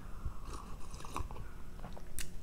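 A person sipping coffee from a mug and swallowing, heard as a few faint mouth clicks and small gulps.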